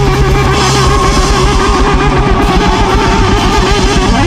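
A rock band playing loud and live, with an electric guitar holding long notes with vibrato over drums and bass.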